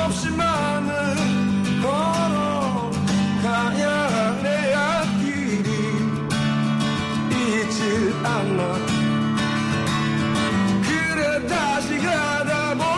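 A man singing a Korean folk-rock song to acoustic guitar, his voice gliding over sustained chords.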